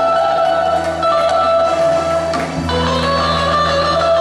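Live band playing an instrumental passage, with electric guitar and keyboard and long held notes, without singing.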